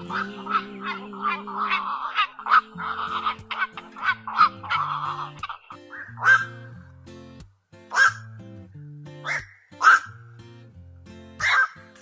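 Black-crowned night herons calling over a pop song's instrumental backing. There is a quick run of short, harsh calls in the first few seconds, then single calls spaced a second or more apart.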